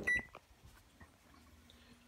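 A single short, high electronic beep from a keypad button pressed to switch a light on, followed by quiet room tone.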